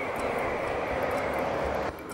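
Jet airliner on landing approach, its engines a steady rushing noise that cuts off suddenly near the end.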